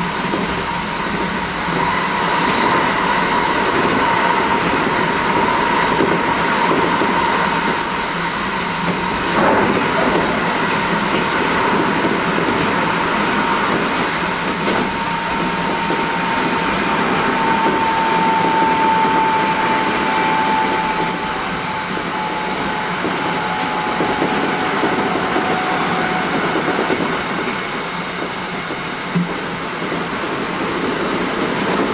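Kintetsu electric train running at speed through a tunnel, heard from inside the front car: a steady loud rush and rumble of wheels on rail. A high whine holds over it for most of the run and fades away near the end.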